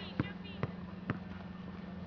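Soccer-field ambience: faint distant voices and three sharp knocks about half a second apart in the first second, over a steady low hum.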